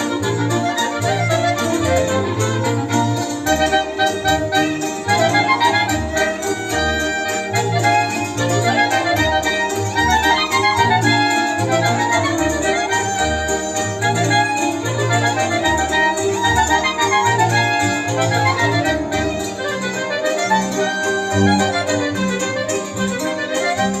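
Polish folk band playing an instrumental tune live: two fiddles, two clarinets, a hammered dulcimer (cymbały) and a double bass, the bass keeping a steady beat under the melody.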